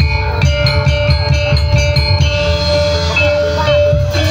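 Javanese gamelan music for a kuda lumping dance: metal keyed percussion struck in a quick, even pattern over drums, with a long held note running through.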